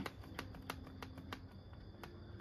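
A run of faint clicks, about three a second, from a Matabi hand trigger sprayer being pumped without spraying: its nozzle is still shut.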